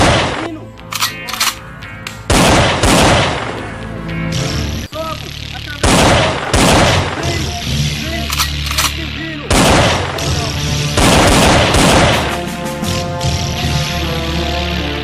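Gunfire sound effects, single shots and short bursts of automatic fire every second or two, over background music.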